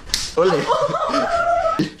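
A sharp slap or smack right at the start, then a man's voice drawn out in a long held, wavering sound without clear words.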